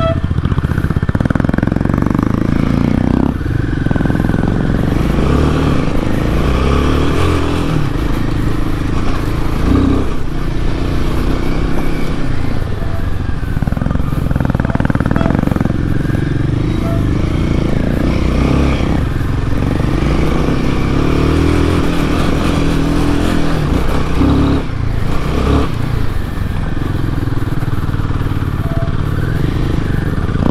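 Royal Enfield Himalayan 450's single-cylinder engine running as the bike is ridden over a dirt trail, its note rising and falling repeatedly with the throttle.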